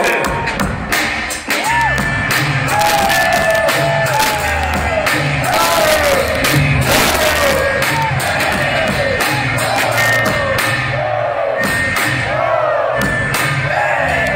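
Live hip-hop concert music played loud over a stadium sound system: a heavy repeating bass beat and drums, a voice on the microphone over it, and a crowd.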